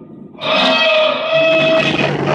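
Live noise improvisation: a dense, distorted electronic texture drops to a brief lull, then surges back in sharply about half a second in. Several held tones ring over a rough noisy layer.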